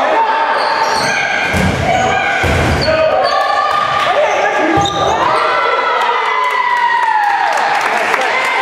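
Dodgeball players shouting and cheering in an echoing gymnasium, with a dodgeball thumping on the hard floor about three times. In the second half one long drawn-out yell falls in pitch as it ends.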